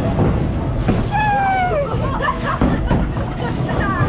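Bowling alley din: the low rumble of balls rolling on the lanes and several sharp knocks of pins clattering, with voices chattering over it.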